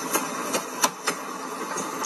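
A car engine running, heard from inside a car, with a few sharp knocks through it.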